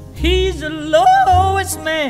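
Slow vocal jazz blues recording: a lead melody line bends in pitch with vibrato over a bass accompaniment, then falls away in a downward glide at the end.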